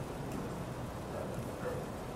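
Room tone in a meeting hall: a steady low hiss, with a faint murmur of a voice near the end.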